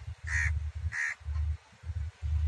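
A bird calling twice: two short calls about half a second apart, over a low rumble.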